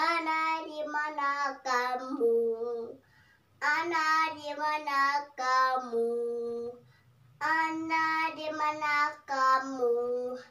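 A young girl singing solo without accompaniment, in three phrases with held notes and short breaks for breath between them.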